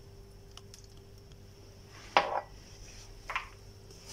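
Two short plastic clatters, about two seconds in and again just after three seconds, as the lid is fitted onto a plastic blender jar, with a few faint clicks earlier over a low steady hum.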